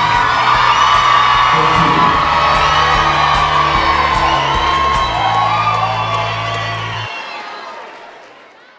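Large crowd cheering and whooping over background music with a steady bass line. The bass cuts off about seven seconds in and the sound fades out.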